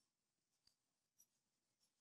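Near silence, with three very faint ticks as a metal crochet hook works yarn into a chain.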